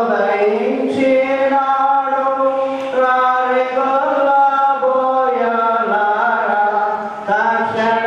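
A single voice chanting a slow devotional melody through a microphone and PA, in long held notes that slide from one pitch to the next.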